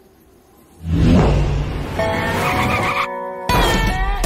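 A cartoon truck's engine and tyres: a loud low rumble that comes in suddenly about a second in. Music with held notes joins it about two seconds in.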